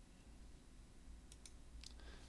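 Faint computer mouse clicks: three in the second half, two close together and one shortly after, over near-silent room tone.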